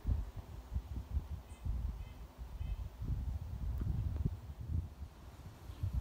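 Low, gusty rumble of wind on the microphone with irregular thumps, and a few faint bird chirps around two seconds in.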